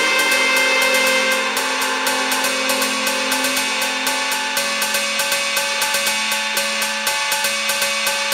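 Bamboo-pole dance music: long bamboo poles clacking together in a fast, even rhythm over steadily held musical tones.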